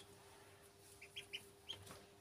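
Ducklings peeping: four short, faint, high peeps in the second half, three in quick succession and one shortly after.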